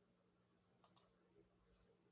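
Near silence broken by a quick double click about a second in.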